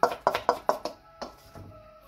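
Metal spoon clinking against a stainless steel mixing bowl while stirring chopped chicken cutlet mixture: a quick run of clicks in the first second, then a few slower ones.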